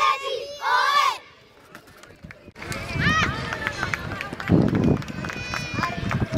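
Young footballers shouting a team chant together in a huddle, breaking off about a second in; after a short lull, scattered children's shouts and calls.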